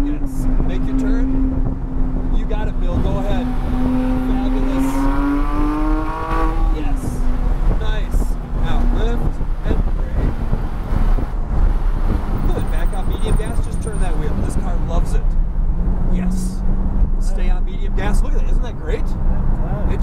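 Porsche 911 GT3's flat-six engine heard from inside the cabin on track. It climbs in pitch under acceleration for a few seconds, drops sharply about six and a half seconds in, then runs steadier at a lower pitch.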